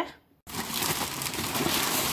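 A brief silence, then steady rustling and crinkling of parcel packaging as a hand rummages in an open cardboard box.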